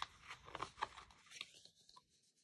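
Faint rustling and small clicks of cardstock as the corners of a handmade paper box are folded and tucked in.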